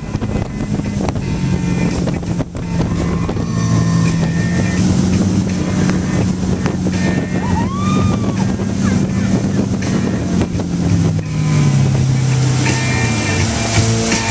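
Towboat's inboard motor running steadily under load, heard from the stern over wind on the microphone and rushing wake water; the engine note drops about three-quarters of the way through as the boat slows.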